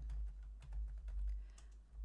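Computer keyboard being typed on: a quick run of light keystrokes over a steady low hum.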